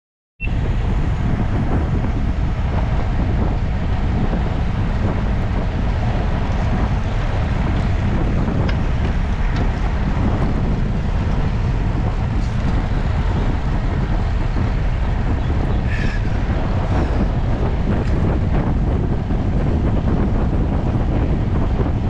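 Steady wind noise buffeting the microphone of a handlebar-mounted camera on a road bike moving at about 35 km/h, a loud, even rumble heaviest in the low end.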